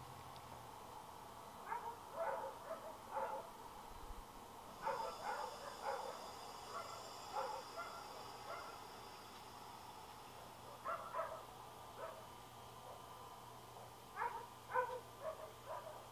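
Roosters held close giving short clucking calls in clusters of a few notes, with pauses of a second or more between the clusters.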